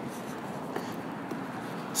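Steady background noise, an even hiss with no distinct events.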